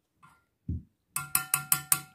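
A spoon tapped five times in quick succession against a hard dish that rings on a steady pitch, knocking off spice, after a soft low thump.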